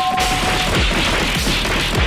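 Cartoon fight-cloud sound effects: a rapid jumble of whacks, crashes and thuds that starts a moment in, over background music. A held high note fades out in the first second.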